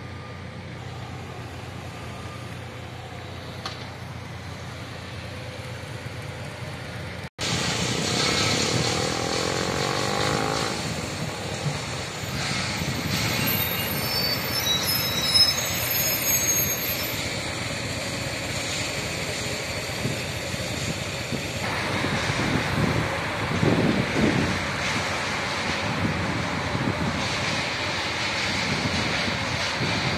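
Road traffic on a busy city street: cars and a city bus driving past. It is quieter at first, cuts out abruptly about seven seconds in, then comes back louder, swelling as vehicles pass.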